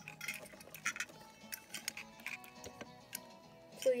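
Light clicks and clacks of die-cast toy cars being handled and moved on a shelf, over quiet background music.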